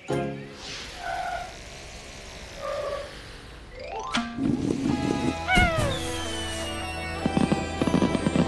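Cartoon background music with sound effects. About four seconds in a whoosh rises, then a cartoon cannon fires with a thump and falling whistle tones. Near the end, fireworks crackle and burst.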